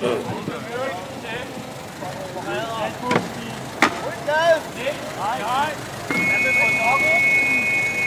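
Men's voices calling and shouting over a crowd, with two sharp knocks in the middle. About six seconds in, a shrill two-note whistle blast starts and is held steady for about two seconds.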